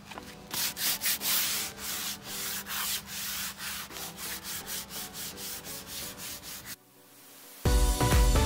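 Hand sanding with P180 sandpaper over primer on a boat hull: quick back-and-forth strokes, about three a second, smoothing the primer ready for paint. The rubbing stops near the end and music comes in.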